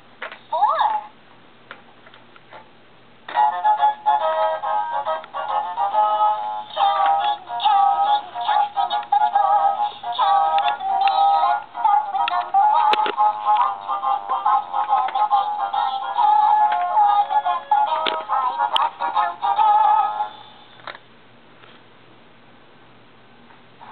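Battery-powered light-up baby toy playing a sung electronic children's tune through its small speaker, starting about three seconds in and stopping near the end. A short rising chirp sounds just before it.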